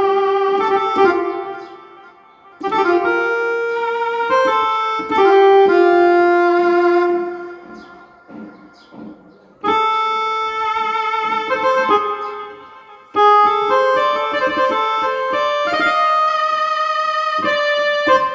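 Yamaha PSR-E473 keyboard playing a melody on its oboe voice: phrases of held reedy notes, some wavering with vibrato, separated by short pauses.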